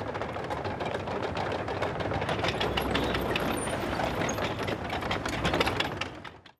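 A T-34-85 tank driving: its V-2 V12 diesel engine rumbling low under a dense, rapid clatter of steel track links.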